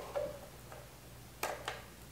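Two light clicks about a quarter second apart, about a second and a half in, from parts being handled at the motorcycle's carburettors and airbox. A faint steady low hum sits under them.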